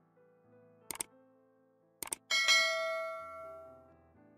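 Subscribe-button animation sound effect: a quick double click about a second in, another double click about two seconds in, then a bright bell ding that rings out and fades over a second and a half.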